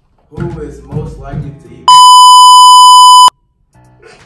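A loud, steady, high-pitched censor bleep of about a second and a half, starting about two seconds in and cutting off abruptly, dropping the sound to dead silence; voices come just before it.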